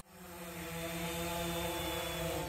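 Quadcopter camera drone in flight, its propellers making a steady hum of several held tones that swells in over the first half second.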